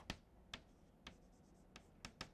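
Chalk tapping on a blackboard during writing: four faint, sharp taps, roughly half a second apart.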